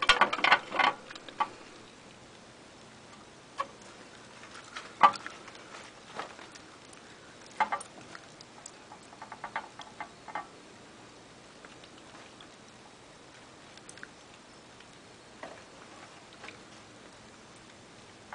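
Sparse small clicks and taps from pet hamsters moving about and eating in their wire-and-plastic cage, with one sharper click about five seconds in and a quick run of ticks around nine to ten seconds in.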